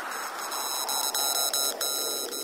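Hardstyle track in a breakdown without the kick drum: a hiss sweeping steadily down in pitch under a high, beeping synth tone that cuts on and off about twice a second.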